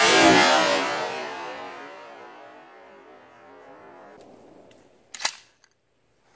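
A single shot from a Remington Tac-14 pump-action shotgun with a 14-inch barrel, firing a homemade wax-slug shot load; the sharp report rolls away in a long echo that fades over about four seconds. About five seconds in comes a short sharp clack.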